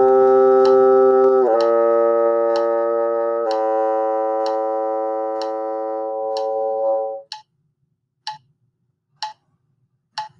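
Bassoon playing three slurred notes stepping down, C, B-flat, then A held long, which stops about seven seconds in. A metronome clicks about once a second throughout and goes on after the playing stops.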